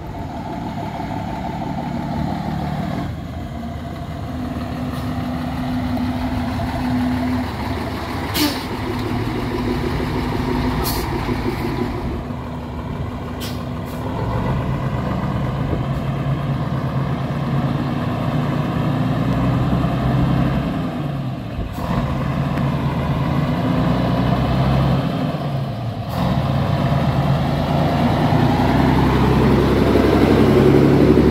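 Scania 112 HS truck's six-cylinder diesel engine pulling along in low gears, its note climbing and then dropping several times as the gears are changed. A few brief sharp sounds come through about a third of the way in.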